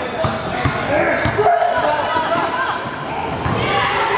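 Indoor basketball game: a basketball bouncing on the gym floor among overlapping shouts and chatter from players and spectators, echoing in the hall.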